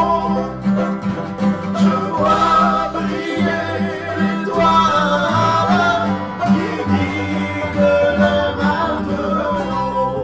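Acoustic folk song in a country style, played on banjo and guitar with a singing voice.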